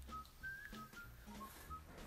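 Faint whistling: a few short, soft notes at slightly different pitches.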